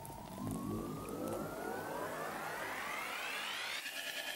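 Synthesized rising sweep of an intro jingle: several tones climb steadily in pitch, building up and breaking off just before the end, where electronic music with a beat comes in.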